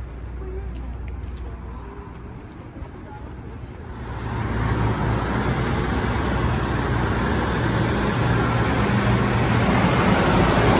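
Street traffic with a heavy truck engine running close by. It grows louder about four seconds in and then holds as a steady low drone under dense noise.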